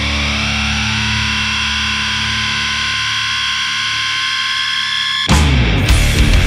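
Heavy stoner-rock music: the last held chord of one track rings out with steady high sustained tones while its bass fades. About five seconds in, the next track starts abruptly and loudly with the full band, drums and distorted guitars.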